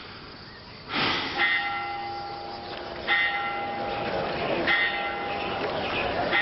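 A bell tolling, struck three times about a second and a half apart, each strike ringing on in several steady tones that overlap the next.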